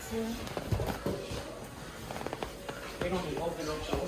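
Faint background voices talking, with a few light knocks and handling noises.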